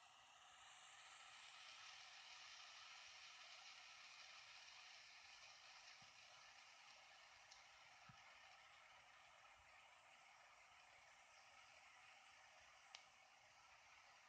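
Faint steady hiss of a small butane pen torch's flame. It swells a little over the first couple of seconds, then slowly fades, with a couple of faint ticks.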